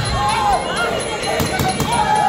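Muay Thai bout: crowd voices shouting over ringside music with a wavering, gliding melody, and a few sharp smacks of strikes landing about a second and a half in.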